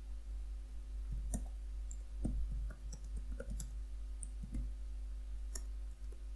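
Computer keyboard typing: scattered, irregular key clicks as a query is typed, over a steady low hum.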